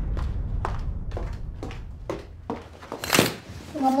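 Footsteps on a floor, about two a second, over a low rumble that fades out. About three seconds in, curtains are drawn open with a brief, loud swish, and a woman starts speaking right at the end.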